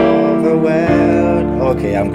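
Electronic keyboard playing a gospel chord progression in C, with sustained chords struck at the start, about a second in, and again near the end.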